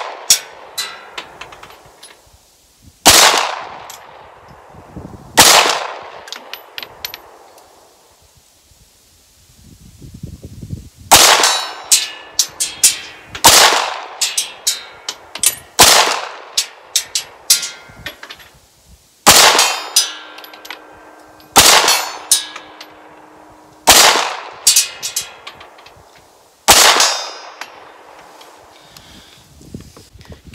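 SAR B6C 9mm compact pistol fired about nine times at a slow, aimed pace, one shot every two to three seconds with a longer pause near the middle. Each shot is followed by a faint clang from steel targets downrange.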